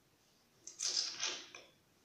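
A scratchy, creaking rub lasting about a second, in a few quick surges. It comes from hands pulling and working short, gelled hair into a puff held by a rubber band.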